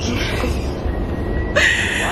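Steady low rumble of a double-deck passenger train heard from inside the carriage, with a thin high tone coming in about half a second in and a brief, louder high squeal near the end.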